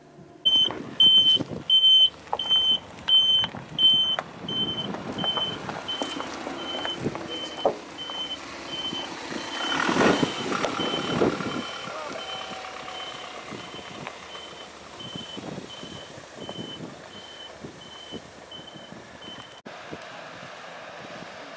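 A vehicle's reversing alarm beeping at one steady pitch, about twice a second. It is loud for the first few seconds, then fainter. Under it runs the ambulance van's engine and motion noise, which swells briefly around the middle.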